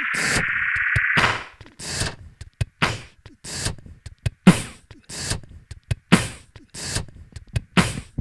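Live-looped electronic music: a rising synth sweep cuts off about a second in, then sparse, sharp percussive hits fall a little more than once a second as a beat is built.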